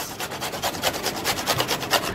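Peeled raw green mango being grated on a metal hand grater: rapid, even rasping strokes of the fruit against the grater's blades.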